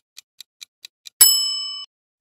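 Quiz countdown timer sound effect: a light clock tick about four or five times a second, then a bright bell ding a little past halfway that rings briefly and cuts off, ending the countdown before the answer is shown.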